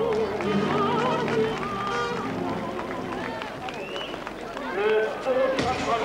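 A singer's voice with a wide vibrato over accompanying music, mixed with many people talking at once. The singing is strongest at the start and again about five seconds in.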